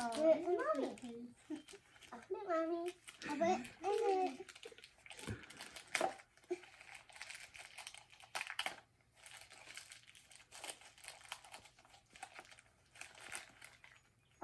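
Gift wrapping crinkling and rustling in irregular small crackles as a small box is unwrapped by hand, with children's voices in the first few seconds.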